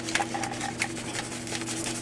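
Soy ginger marinade being poured and scraped out of a glass bowl into a plastic zip-top bag: a run of faint, irregular scrapes and ticks, with a low steady hum underneath.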